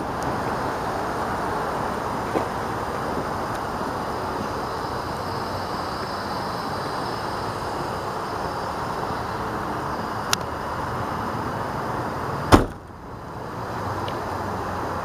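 Steady low background rumble with no clear pitch, with one sharp knock near the end followed by a brief dip in the noise.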